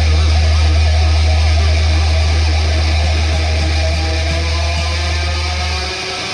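Heavy metal band playing: distorted electric guitars over a long, held low bass note that cuts off near the end, with a wavering sustained higher note above it.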